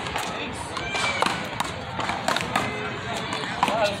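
Sharp, separate knocks of a paddleball being struck by paddles and hitting the concrete wall, several times over a few seconds, with voices in the background.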